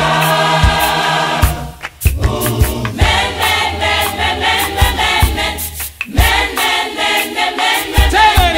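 South African clap-and-tap gospel choir singing in harmony over a steady beat of sharp claps, with two brief breaks between phrases.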